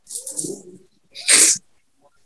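A woman crying: a soft, breathy sob at the start, then a short, sharper sob about a second and a half in.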